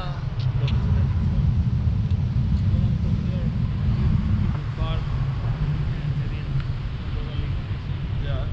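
Airflow of a paraglider in flight buffeting the camera microphone: a steady low rumble of wind noise, heavier for the first four and a half seconds and easing a little after.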